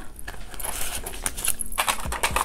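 Paper banknotes rustling as cash is pulled out of a clear plastic binder envelope pocket, with light clicks and jingles.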